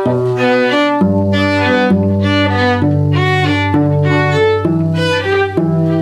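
A cello and a second bowed string instrument playing a folk tune together: the cello holds long low notes that change about once a second, under a quicker-moving melody.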